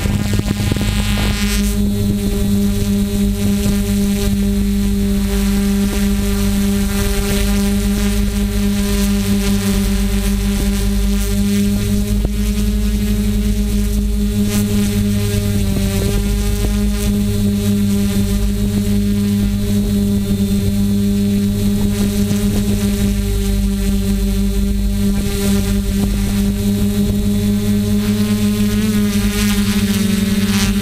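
Small quadcopter drone's propellers humming steadily, a strong low pitch with a stack of overtones, the pitch wavering slightly near the end.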